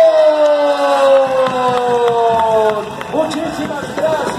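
Murga chorus holding a long final note that sinks slowly in pitch for almost three seconds, followed by short voices or shouts about three seconds in.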